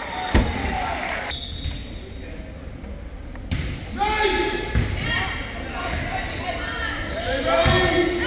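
Volleyball rally: a few sharp hits of hands on the ball, seconds apart, with players and spectators shouting and calling, echoing in a large gym.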